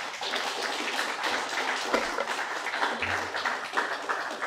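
Audience applauding: many people clapping at once, a dense steady sound.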